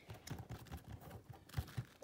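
Faint rustling with scattered soft taps and bumps: handling noise from a hand moving over a plastic toy stable's mat and artificial grass close to the phone's microphone.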